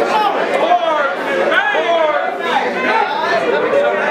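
Several men talking over one another, loud and overlapping, with no one voice clear.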